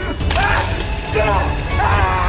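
A woman's strained, choking cries and gasps as she is strangled, coming in short bursts about half a second in and again near the end, over a steady low rumble.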